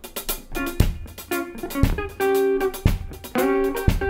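Afro-funk band music starting suddenly: electric guitar chords over a drum kit, with a heavy low drum hit about once a second.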